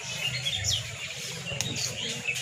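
Small birds chirping: several short, high calls that fall in pitch, over a low, steady background murmur.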